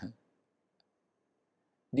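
Near silence in a pause between a man's spoken phrases, with one faint click a little under a second in; his voice trails off at the start and resumes at the very end.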